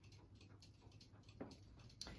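Near silence: room tone with a low hum and faint, light ticks.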